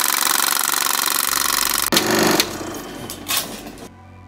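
Film-projector clatter sound effect: a loud, fast mechanical rattle that stops about two seconds in with a sharper hit. A fading tail and a low steady hum follow, with a single click near the end.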